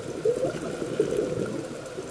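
Scuba exhaust bubbles bubbling and gurgling underwater.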